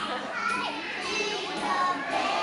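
Many young children talking and calling out at once, their voices overlapping.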